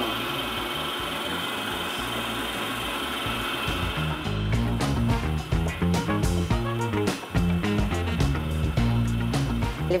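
Electric stand mixer running steadily, beating a cream filling. About four seconds in, background music with a steady bass beat comes in and carries on over it.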